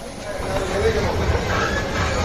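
Railway station din: a train's low rumble that swells about half a second in, with people's voices over it.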